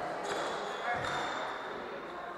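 A squash rally: the ball hits racket and walls with sharp knocks about a quarter second and a second in, and court shoes give high squeaks on the hardwood floor. Voices murmur underneath.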